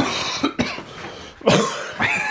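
A man coughing hard, three harsh coughs.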